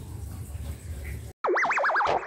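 Faint background ambience, then about a second and a half in an abrupt cut to an outro sound effect: a synthesized 'boing' tone warbling quickly up and down in pitch, leading into electronic music.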